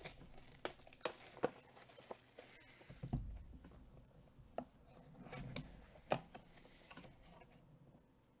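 Plastic shrink wrap crinkling and tearing as a sealed trading card box is unwrapped, with scattered light clicks and taps from handling the cardboard box.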